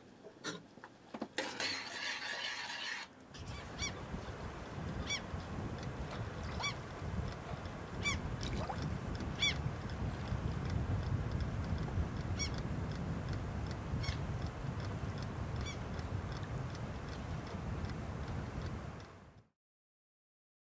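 Steady wind noise with repeated short, high bird calls scattered through it, after a few clicks and a brief hiss in the first three seconds. The sound cuts off shortly before the end.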